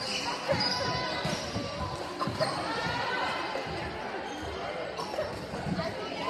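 Indoor volleyball rally: several sharp hits of the ball and its impacts, over a steady murmur of players' and spectators' voices, echoing in a large gymnasium.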